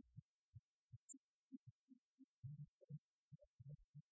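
Near silence, with faint, irregular low thuds.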